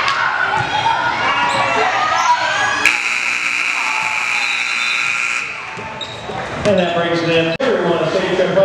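Gym scoreboard buzzer sounding about three seconds in, one steady high tone held for about two and a half seconds. Before it, a basketball bouncing amid players' and crowd voices; voices return after it.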